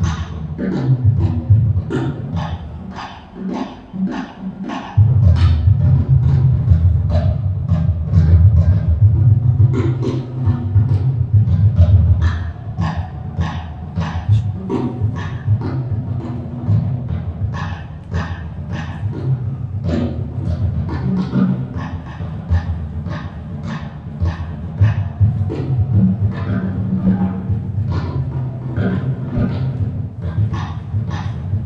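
Percussive music with a deep, sustained low tone and sharp strikes repeating about two to three times a second; the low part drops away briefly a few seconds in.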